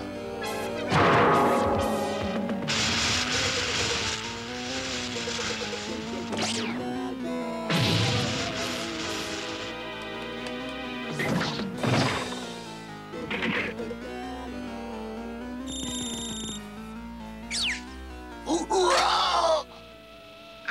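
Cartoon action music under slapstick sound effects: several loud whacks and crashes, quick rising and falling whooshes, and a short electronic beep near the end.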